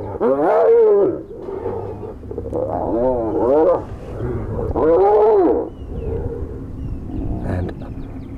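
Spotted hyenas fighting, one crying out in loud, drawn-out squeals, each rising then falling in pitch. There is one long squeal at the start, a run of shorter ones around three seconds in, and another long one around five seconds in.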